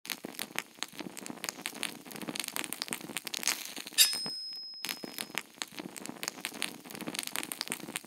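Logo-intro sound effect of dense, irregular crackling, with a sharp hit about halfway through and a high ringing tone that fades out over a second or so.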